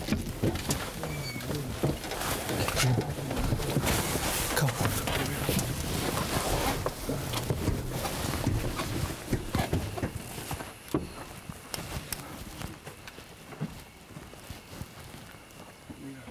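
Knocks and rustling from handling a camera while someone climbs out of a car, with footsteps on the ground and indistinct voices; it is busiest for the first ten seconds or so and quieter after that.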